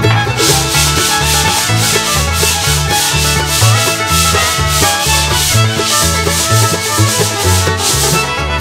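Hand sanding of rough first-coat plaster filler on plasterboard with a sanding pad: quick back-and-forth rasping strokes, nearly three a second, starting just after the beginning and stopping just before the end. Background music with a steady bass line plays underneath.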